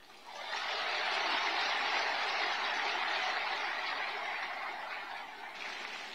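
Audience applauding: the clapping swells up just after the start, holds steady for several seconds and dies away near the end.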